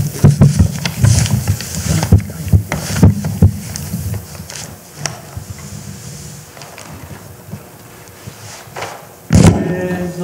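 Irregular knocks, bumps and rustling from hands rolling and gripping a Torah scroll on the reading table, picked up close by the lectern microphone. They are densest and loudest in the first few seconds, then thin out, and a single loud thump comes near the end.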